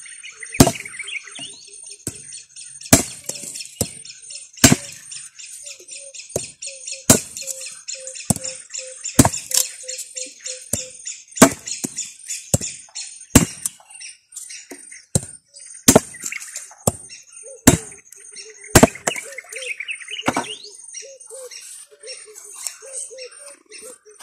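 Machete chopping woody cassava stems into short cuttings on a wooden plank: sharp chops at an uneven pace, about one every second or two. Birds chirp steadily in the background.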